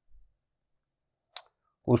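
Mostly near silence, broken by a faint low thump at the very start and one short, sharp click about a second and a half in.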